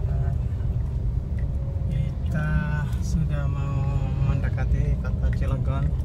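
Steady low rumble of a car's engine and road noise heard from inside the cabin while driving in traffic, with a voice talking over it in the middle.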